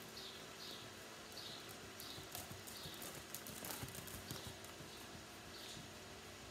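Faint hoofbeats of a ridden horse on the sand footing of an indoor arena, growing louder and more distinct in the middle as the horse passes close by, then fading.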